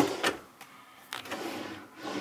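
A wooden pull-out drawer being handled: two knocks at the start, then a short sliding noise about a second in.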